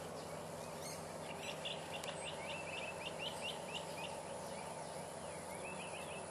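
A bird calling in a quick run of short, high chirps, about five a second, over steady outdoor background noise, with a few more chirps near the end.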